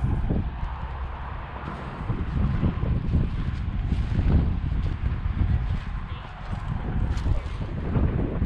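Wind buffeting the camera microphone: an uneven, gusty low rumble that rises and falls throughout.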